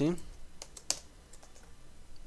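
Computer keyboard typing: a scatter of separate keystroke clicks, one sharper than the rest just under a second in.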